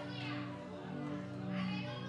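Soft background music of steady sustained chords, with faint voices from the congregation over it.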